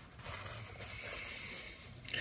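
Paper napkin rubbed between the hands, wiping off hand cream: a faint, steady rustle.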